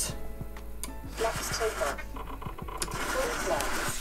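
Servos in a scratch-built RC Airbus A350 wing driving the flaps down, with a small electric-motor buzz, under background music.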